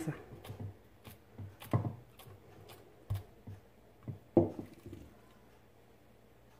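A glass bottle base pressing minced meat into a plastic ring mould on a plate, with scattered soft knocks and taps as the bottle and ring are handled. The ring is lifted off near the end.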